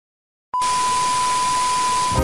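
Television static sound effect: a steady hiss with a steady beep tone over it, starting abruptly about half a second in after silence.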